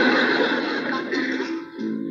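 Laughter over background music, dying down in the second half as steady music notes carry on.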